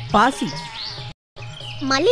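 A voice speaking over quiet background music. The sound drops out completely for a moment about halfway through, then the voice resumes.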